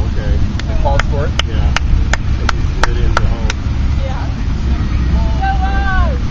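Wind buffeting the microphone outdoors, a steady low rumble. In the first half a run of about nine sharp clicks comes at roughly three a second, with faint voices in the background.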